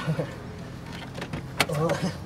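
A man's short wordless vocal sounds, with a sharp click about one and a half seconds in.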